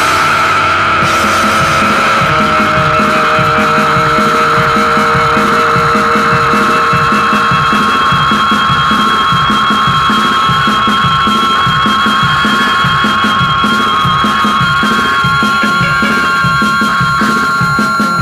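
Instrumental passage of a mathcore/post-hardcore band recording, with no vocals. Long held, ringing guitar notes run over a steady, driving rhythm section at an even loudness.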